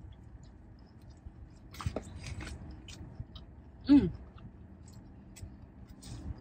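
A person chewing a mouthful of burger, with soft wet mouth clicks, then an appreciative "hmm" falling in pitch about four seconds in, the loudest sound.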